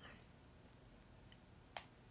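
Near silence: room tone, with one faint short click near the end.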